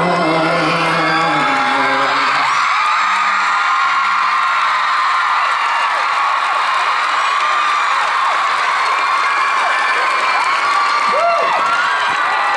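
Concert crowd cheering, with many high-pitched screams and whoops, over the band's last held notes, which end about three seconds in.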